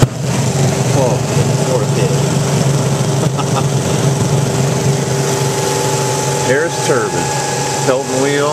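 Harris Pelton-wheel hydro turbine running under the water jets of three to four nozzles: a steady machine hum and whine over the hiss of spraying water. A second, higher steady tone joins about six seconds in.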